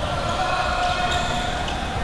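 Echoing sports-hall ambience from a floorball game: players' voices and calls, with occasional knocks of sticks and ball on the court.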